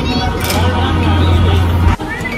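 Steady low hum of an air hockey table's blower, with voices and arcade background music over it; the hum cuts off suddenly near the end.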